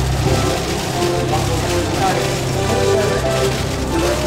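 Background music with a steady bass line, under a murmur of voices in the room.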